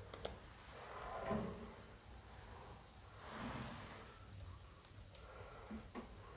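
Faint rustling of sheer curtain fabric, with a few light clicks from the curtain rail as the curtain is fitted onto it.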